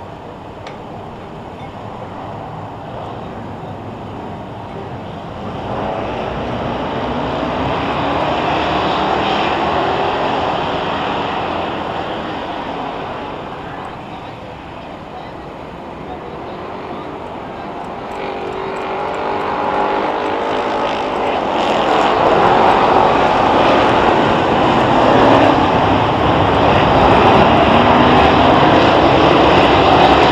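A field of Hoosier Stock cars racing at full throttle on a dirt oval, many engines together with rising and falling pitch as cars go by. The sound swells twice as the pack comes around, loudest in the last third.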